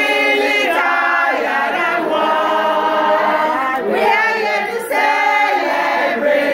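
A group of women singing together in unison, holding long drawn-out notes.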